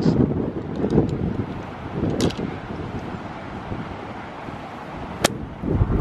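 Wind buffeting the microphone, then about five seconds in a single sharp click of a golf club striking the ball out of grassy rough.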